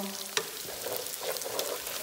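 Diced pork frying in a pan, sizzling and crackling as a wooden spatula stirs it, with a sharp knock of the spatula on the pan about a third of a second in. The cooking liquid has boiled off, so the pork is now frying dry in its own fat.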